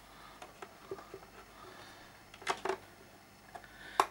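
Small screws being driven back into the underside of a Behringer U-Phoria UM2 audio interface with a hand screwdriver: faint scraping and light clicks, with two sharper clicks about two and a half seconds in.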